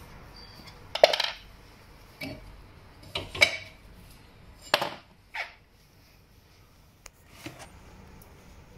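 Metal clinks and light knocks from a brake caliper and screwdriver being handled and fitted over a brake disc: about half a dozen short, sharp clinks, irregularly spaced, the loudest about a second in and near the middle.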